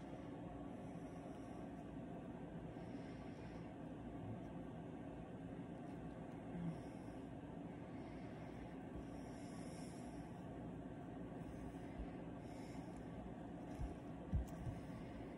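Quiet, steady room noise with soft breaths through the nose every few seconds.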